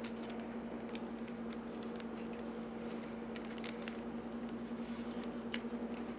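Faint scattered clicks and scrapes of plastic being handled as a trading card is slid into a rigid clear plastic card holder, over a steady low hum.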